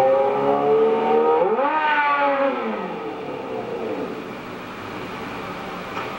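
Yamaha FZ600's four-cylinder engine running at a steady pitch, then revving up sharply about a second and a half in and falling away over the next second as the throttle closes, then running on more quietly. It is heard from an old videotape played back through a TV.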